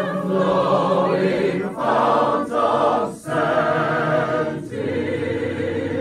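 Large mixed chorus of men and women singing slow, hymn-like held chords without accompaniment, the voices wavering with vibrato. The phrases break for a breath about every one and a half seconds.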